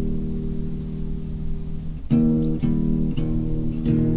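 Guitar music: a strummed chord rings for about two seconds, then three fresh strums follow about half a second apart, over a low steady hum.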